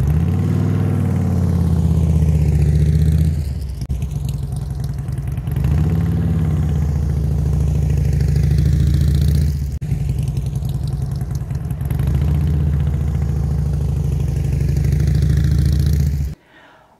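Touring motorcycle's engine running as the bike circles through a turn. It drops off as the rider slows on the front brake, then picks up again on the throttle, and the cycle repeats about every six seconds.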